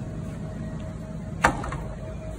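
A single sharp click about one and a half seconds in, from hard parts being handled during disassembly, over a steady low background hum.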